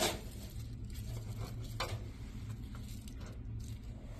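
Handling sounds of a metal muffin pan covered in plastic wrap being settled on a wire rack: a sharp knock at the start, another just under two seconds in, and a few faint clicks and rustles, over a low steady hum.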